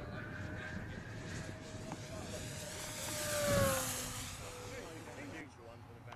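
Radio-controlled model aeroplane flying past, its motor and propeller note growing louder and then dropping in pitch as it passes, about three and a half seconds in.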